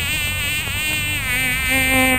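A flying insect buzzing close to the microphone, a loud steady drone whose pitch wavers as it moves around.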